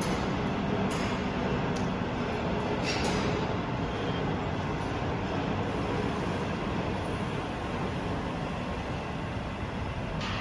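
Steady low rumble of factory machinery noise, with a few faint clicks in the first three seconds.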